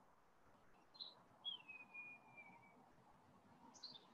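Faint bird calls: a short high chirp about a second in, a long whistled note sliding down in pitch, then a couple of quick high chirps near the end, over near-silent room tone.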